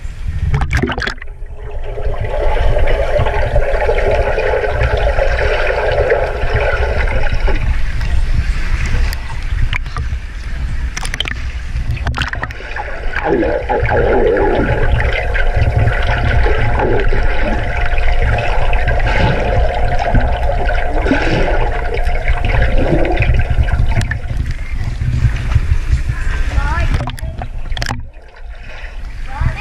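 Muffled underwater sound of a swimming pool picked up by a submerged camera: a steady low rumble and hum of water, with swimmers' bubbling and tail kicks.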